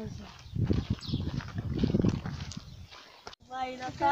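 Low rumbling buffeting on the microphone of a handheld phone carried at walking pace, with faint voices behind it. Near the end it cuts off suddenly and a child's voice comes in.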